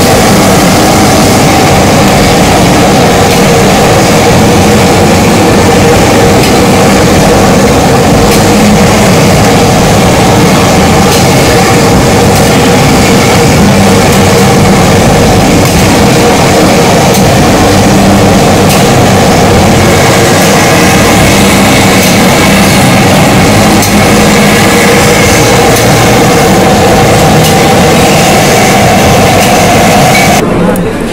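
High-pressure gas stove burner running under a pot of boiling water: a loud, steady rushing drone with a faint held hum, unchanging throughout.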